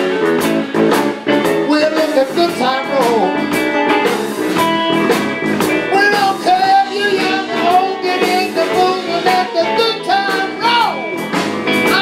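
Live electric blues band playing, with electric guitars, bass guitar and drum kit, under a lead line that bends up and down in pitch.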